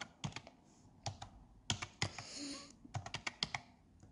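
Light, sharp clicks in short rapid runs, like tapping or typing, with a brief soft hiss about halfway through.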